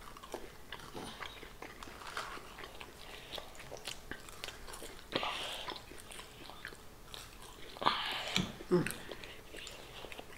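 Two people chewing and biting salty french fries, with faint crunches and small mouth clicks scattered throughout. There is a breathy rustle about five seconds in and a brief murmur near the end.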